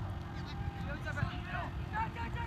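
A flock of birds giving quick, short honking calls, each rising and falling in pitch, over a steady low rumble.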